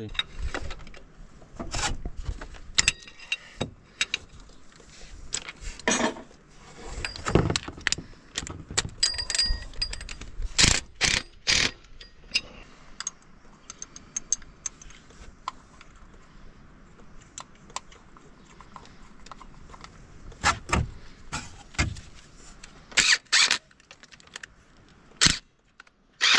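Irregular metallic clinks and knocks of hand tools and metal parts being handled at an engine's timing-belt tensioner pulley, with a quieter spell in the middle and a cluster of sharper knocks near the end.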